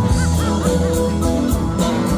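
Live rock band playing with a steady drum beat. In the first second a lead guitar plays a run of quick rising-and-falling bent notes.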